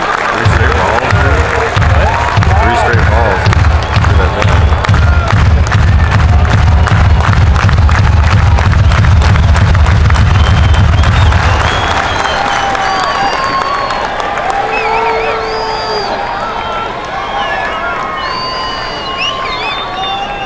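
Baseball stadium crowd cheering and clapping over loud public-address music. Near the twelve-second mark the cheering and music drop off, leaving a crowd murmur of voices and scattered shouts.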